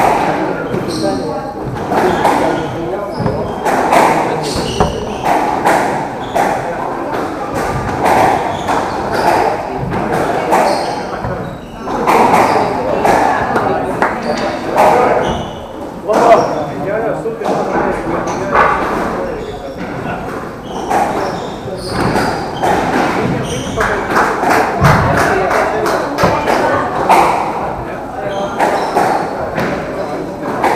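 Squash rally: the ball struck by rackets and hitting the court walls, sharp knocks and thuds at irregular intervals, ringing in a large hall.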